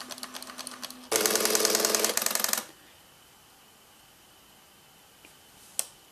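Canon X-710 colour plotter (an ALPS pen-plotter mechanism) drawing lines: about a second of rapid ticking, then a loud, fast mechanical rattle of the stepper-driven pen and paper movement for about a second and a half that stops abruptly. A single sharp click comes near the end.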